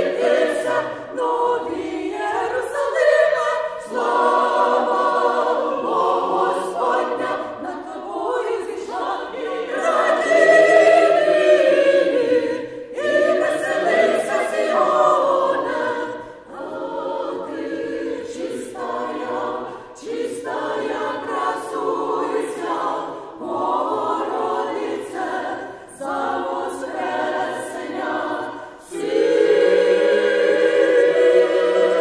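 Mixed choir of men's and women's voices singing a Ukrainian song in sustained phrases, with brief breaks for breath between them.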